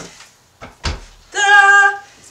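A light click and then a single thump as the track bike is set down onto the rollers, followed in the last half-second by a short, steady sung note in a woman's voice.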